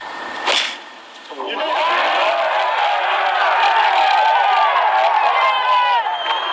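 A golf club strikes the ball once, a sharp crack about half a second in. About a second later the gallery breaks into cheering and shouting, many voices together, and keeps it up.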